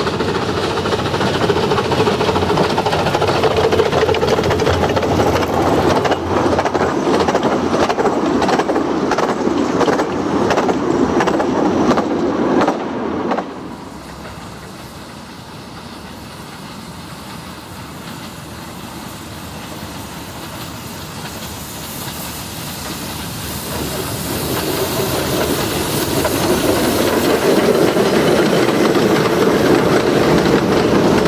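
A 15-inch gauge steam train runs close past, its wheels clicking over the rail joints. About 13 seconds in, the sound cuts off suddenly to a quieter, distant train, which grows louder as it comes near.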